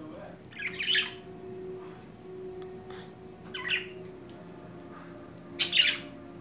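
Budgies giving three short calls: one about a second in, one past the middle and one just before the end.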